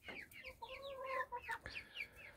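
Faint chicken calls: a steady run of quick, high, falling peeps from young chickens, with a lower, longer call about half a second in.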